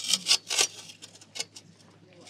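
Shovel blade scraping and scuffing in dry dirt: a few short scrapes in the first second and a half, then quieter.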